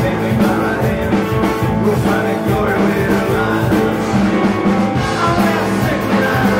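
A live rock band plays loudly, with a driving drum beat under guitar, keyboard, saxophone and trumpet.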